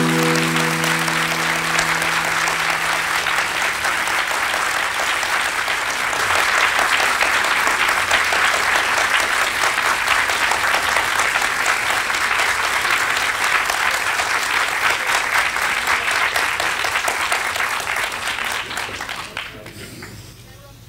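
Live audience applauding at the end of a song, while the final acoustic guitar chord rings out and fades over the first few seconds. The applause holds steady and dies away near the end.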